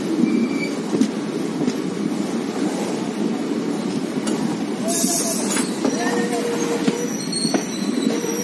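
Moving passenger train heard from an open coach doorway: a steady rumble of wheels on the rails, with thin wheel-squeal tones and a short burst of hiss about five seconds in.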